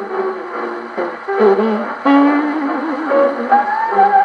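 A 1946 78 rpm shellac record of Hawaiian-style band music playing acoustically on an HMV 104 wind-up gramophone through a thorn needle. The sound is thin, with no bass.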